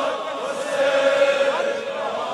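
Men's voices chanting a Shia mourning lament (noha) in unison over a PA, on long held notes.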